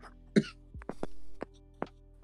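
A woman clears her throat once, short and breathy, about half a second in, with a few light clicks after it over soft, steady background music.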